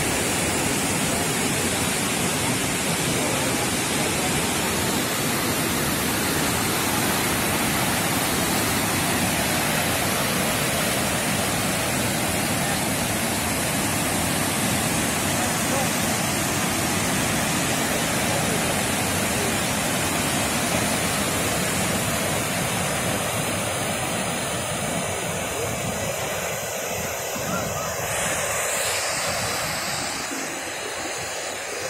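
Large waterfall's whitewater pouring over rocks: a steady, loud rush of water that eases slightly near the end.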